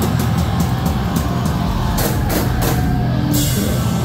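Live slam deathcore band playing loud: fast drumming with quick cymbal hits over distorted guitars and bass.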